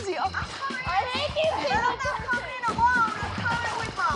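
Several excited women's voices calling out in high pitches over background music.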